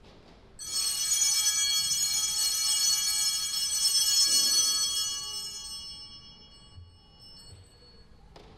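Altar bells (Sanctus bells) ringing at the elevation of the chalice, which marks the consecration. The ringing starts about half a second in, holds for about four seconds and then fades away.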